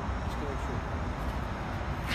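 Steady low hum of the ride-on sweeper's diesel engine idling.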